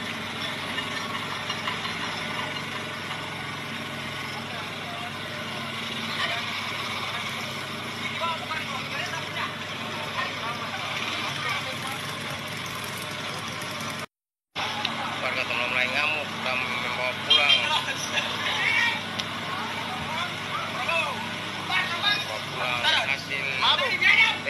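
A crowd of many people talking and calling out over the steady running of motorcycle engines. The sound cuts out for a moment about halfway, and after that the voices are louder, with sharper shouts.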